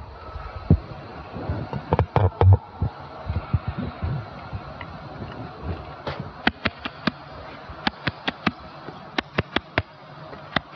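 Tabla played solo: a few deep, booming bass-drum strokes in the first seconds, then sharp, dry treble-drum strokes in quick groups of about four from about six seconds in, a pattern imitating a train.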